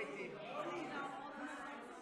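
Indistinct chatter of several voices in a classroom.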